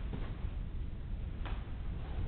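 Steady low background rumble with a single sharp click about one and a half seconds in.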